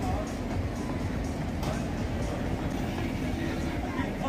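Busy street ambience: a steady low rumble of traffic under the chatter of people at outdoor patio tables, with music playing in the background.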